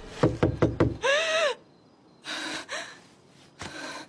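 A plate dropped on a hard floor, clattering in several quick impacts, followed by a woman's short cry. Two softer noises follow later.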